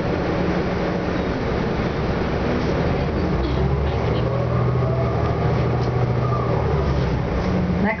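Orion VII NG diesel city bus heard from inside, pulling away and accelerating. Its engine note builds about three and a half seconds in, with a rising whine over the following seconds.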